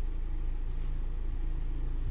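Ford Ranger pickup's engine idling, a steady low rumble heard from inside the cab.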